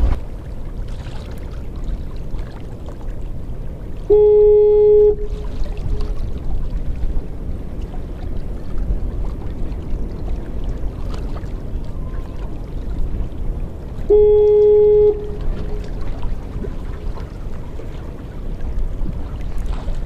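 Wind buffeting the microphone, broken twice by an identical loud, steady horn blast of about one second: once about four seconds in and again ten seconds later. The regular repeat suggests the automated fog horn on the navigation tower at the jetty's end.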